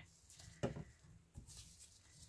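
Near silence: quiet room tone with a few faint, brief clicks.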